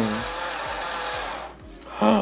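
Electric pencil sharpener grinding a wood-cased colored pencil to a point: a steady grinding noise that stops about a second and a half in.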